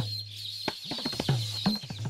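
Male baya weavers chattering in a high, wheezy, fluttering run over background music of a few tabla-like drum strokes and a low steady drone.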